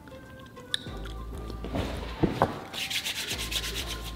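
Metal spoon scraping a spoonful out of a tub of ice cream: a few light clicks, then a short rasping scrape in the second half.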